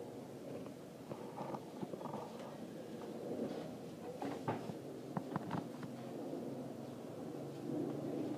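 Low, steady background rumble with a few short soft clicks and knocks around the middle.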